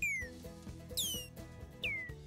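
Synthesized laser sound effects from the MakeCode micro:bit sound editor, random variations of one laser sound: three short zaps about a second apart, each a quick falling pitch sweep lasting about a third of a second.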